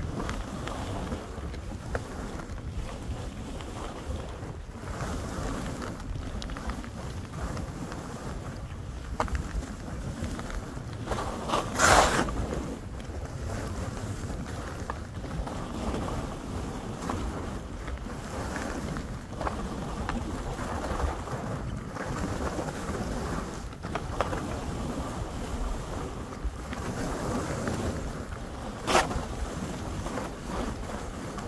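Skis hissing and scraping through fresh powder while wind buffets the microphone, with two brief louder rushes: one about twelve seconds in and one near the end.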